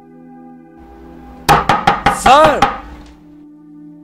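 A quick run of about six sharp knocks or clicks within a second, with a short rising-and-falling tone among the last of them, over soft background music.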